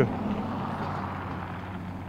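Steady background rumble of distant engine noise, with a low, even hum underneath.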